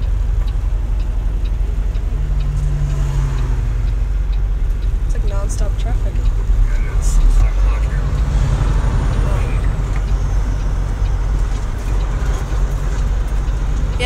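Peterbilt semi-truck's diesel engine running while the truck drives, a steady low rumble heard from inside the cab.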